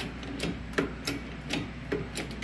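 Wooden blocks and a bent steel tractor hood clicking and creaking under the load of a shop press as the hood is pressed back straight. There are about four short, sharp clicks in two seconds.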